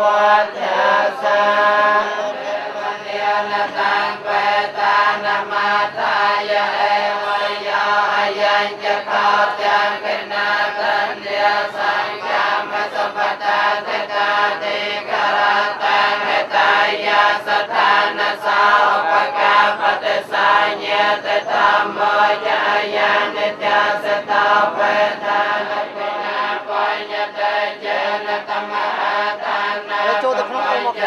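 A group of Buddhist monks chanting together in unison: a continuous, steady recitation of many male voices that runs on without a pause.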